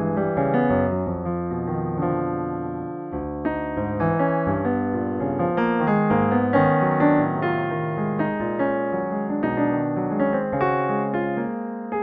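Solo piano playing an improvisation in a classical style with a touch of jazz: chords and melody notes held and overlapping one another.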